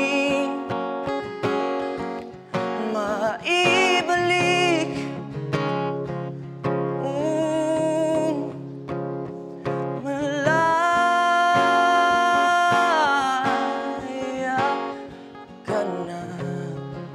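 A solo singing voice with acoustic guitar accompaniment, singing slow, drawn-out phrases; about two-thirds of the way through, one note is held steadily for over two seconds.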